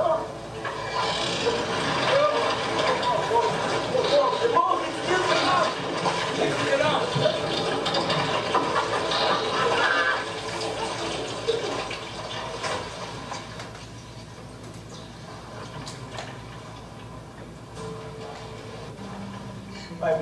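Film soundtrack playing from a wall-mounted TV and picked up across the room: actors' voices over a background of water noise, growing quieter in the second half.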